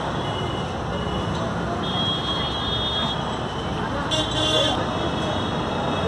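Busy street ambience: a steady wash of traffic noise and background chatter, with short high vehicle-horn toots, the clearest about four seconds in.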